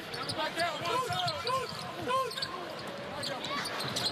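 Basketball shoes squeaking on a hardwood court: many short squeaks, each rising then falling in pitch, one after another, over the murmur of an arena crowd.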